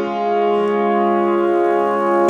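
A G-flat major chord (G-flat, B-flat, D-flat) is played on a keyboard in a piano voice. It is struck just before and held, ringing steadily with little fade.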